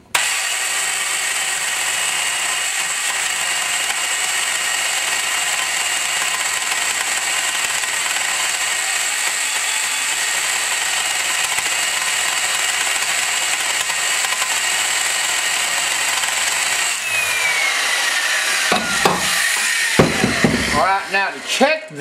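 Valve seat grinder's electric driver spinning a grinding stone on a pilot against a cast-iron valve seat, a steady high whine with the rasp of the stone cutting the 60-degree angle to enlarge the seat for a bigger valve. About 17 s in the motor is switched off and its whine falls away, followed by a few knocks.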